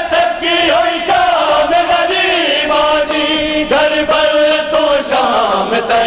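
A group of men chanting a Punjabi noha, a Shia lament, together in sustained, melismatic lines.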